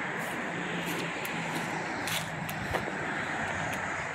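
Steady outdoor background noise: a continuous hiss with a faint low hum under it, and a brief tap a little before three seconds in.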